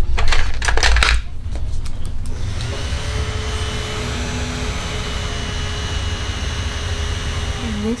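Small handheld electric fan whirring steadily with a faint whine, blowing air at the face to dry freshly sprayed setting spray. It settles into its steady run about two seconds in, after a couple of seconds of rustling handling noise.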